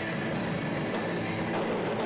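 Live rock band playing: electric guitars and drums heard as a dense, steady wall of sound from the audience.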